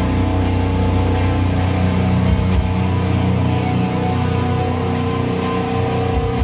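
Live metal band with distorted electric guitars and bass holding a sustained, ringing chord, and only a few drum hits.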